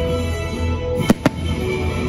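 Aerial fireworks going off over music, with two sharp bangs in quick succession about a second in.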